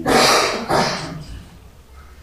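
A man's voice: two short, harsh bursts within the first second.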